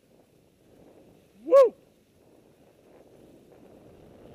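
A skier's short, loud whoop about a second and a half in, rising then falling in pitch, over the faint swish of skis through snow.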